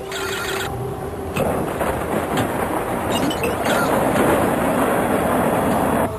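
Short computer bleeps, then from about a second and a half in a recorded creature's screech played back amplified through a computer, a harsh, noisy cry that grows louder.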